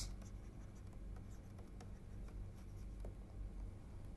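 Faint taps and scratches of a stylus on a pen tablet as words are handwritten, over a steady low hum.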